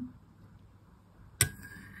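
A metal spoon clinks once against a ceramic soup bowl about one and a half seconds in, after a quiet stretch. The clink is sharp, with a faint ringing after it.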